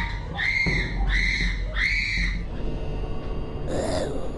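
A woman screaming in fright: three short, shrill screams in quick succession, each about half a second long.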